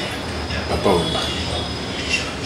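A steady low background hum, with one short voice-like sound falling in pitch a little under a second in.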